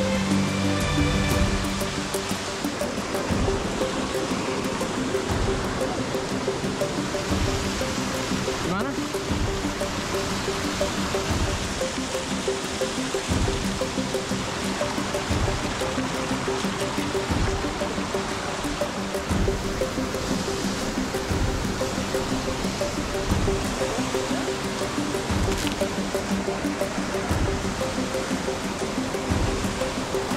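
Rushing water of a waterfall cascading over rocks, under a background music track of sustained notes.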